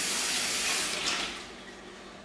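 Kitchen sink tap running as hands are washed under it. The water is shut off a little over a second in, and the rush fades out.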